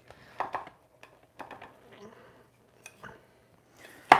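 Faint, intermittent scrapes and light clinks of a metal slotted spatula working under enchiladas in a ceramic baking dish.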